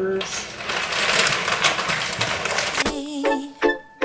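Plastic bag of potting mix crinkling and rustling as it is handled. About three seconds in, background music with plucked notes starts.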